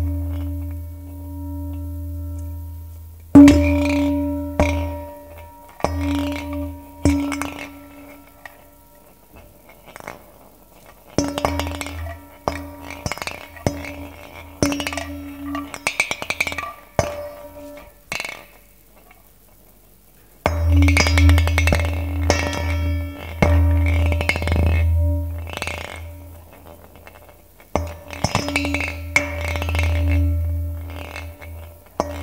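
A small ball rolling and rattling around a handheld shallow metal pan, giving dense runs of clinks and ticks over a ringing tone and a low rumble. It comes in several stretches of a few seconds each, with short quiet pauses between them.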